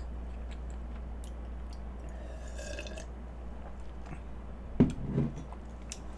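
Quiet mouth sounds of someone eating soft cake: faint chewing and small wet clicks, with one sharp click about five seconds in, over a steady low hum.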